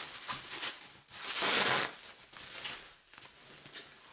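Plastic bubble wrap rustling and crinkling as it is peeled off a boxed radio, with scattered crackles and one louder, longer rustle about a second and a half in.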